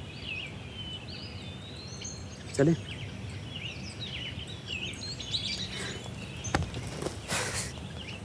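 Small birds chirping and twittering, many short rising and falling calls overlapping throughout. Near the end there is a sharp click and then a brief rustle.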